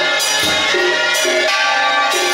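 Temple procession percussion ensemble: gongs and cymbals ring on continuously over a deep drum struck about once a second, in a steady repeating pattern.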